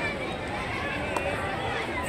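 Faint voices and chatter of people around an outdoor playing ground, with a brief click about a second in.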